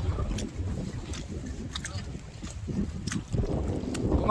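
Low rumbling noise of wind and clothing rubbing on a chest-worn microphone while walking, with a few faint clicks scattered through it.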